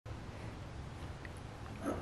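Low steady background rumble, with a soft handling sound near the end as hands take hold of a ceramic mortar on the table.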